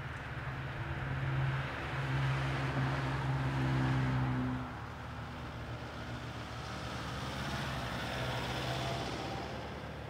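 Street traffic: a car engine running steadily close by, loudest in the first half, then a passing vehicle's engine and tyre noise swells and fades in the second half.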